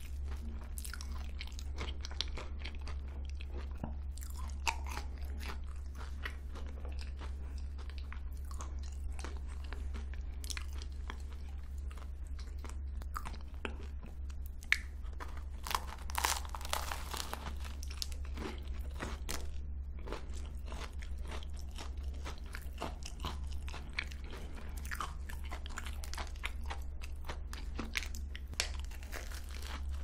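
Close-miked crunching and chewing of a cream puff with a crisp craquelin cookie crust and custard cream filling: a steady run of small crisp crackles, with the loudest crunchy bites about halfway through.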